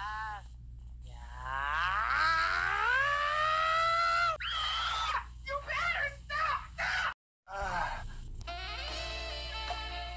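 Edited meme audio: a voice draws out one long sound that rises in pitch and cuts off about four seconds in, followed by a few short vocal sounds. After a sudden break in the sound, music with held notes begins near the end.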